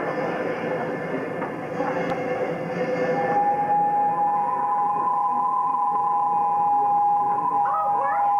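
Sustained electronic keyboard tones as stage underscore: a dense held chord, then two high notes held steady side by side from about three seconds on.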